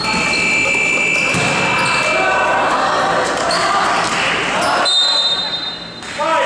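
A referee's whistle blown in a long steady blast at the start and again briefly near the end, over shouting voices and a bouncing basketball in a large gymnasium hall.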